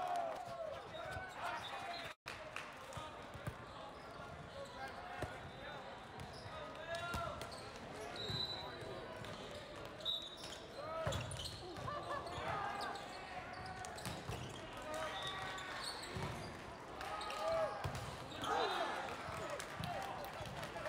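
Indoor volleyball rally in a large hall: players and spectators shouting and calling out indistinctly, with the ball struck and hitting the court several times in the second half.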